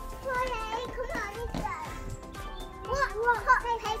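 Young children's voices calling out over upbeat electronic background music.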